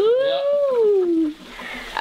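A person's long drawn-out "ooh", rising in pitch, holding, then sliding down over about a second and a half.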